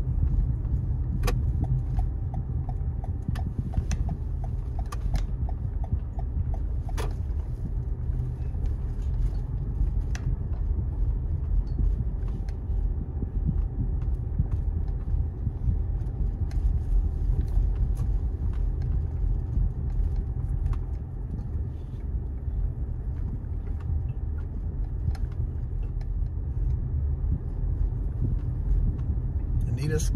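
A car driving at low speed, heard from inside the cabin: a steady low rumble of engine and road noise, with a few light clicks in the first ten seconds.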